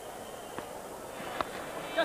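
Low, even crowd murmur at a cricket ground, broken by two short, sharp knocks, the louder about a second and a half in: the bat edging the ball.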